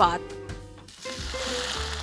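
Hot cooking oil sizzling: a steady hiss that starts about halfway through and grows louder. Background music plays underneath.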